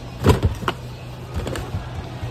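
Plastic storage bins and lids being handled and knocked together: several knocks, the loudest near the start and lighter ones around a second and a half in, over a steady low hum.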